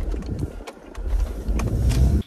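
Car cabin noise while driving: a steady low road and engine rumble, with a few faint clicks.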